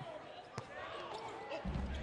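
Live basketball game court sound in an arena: a steady crowd murmur with a sharp knock about half a second in, and a deep rumble swelling up near the end as a shot goes up at the rim.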